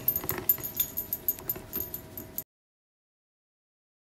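Light jingling, clicking and rattling handling noises as someone moves right up to the recording device. The sound cuts off suddenly about two and a half seconds in.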